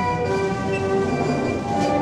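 Orchestral film-score music: several held notes sounding together as a sustained chord over a low rumbling undertone.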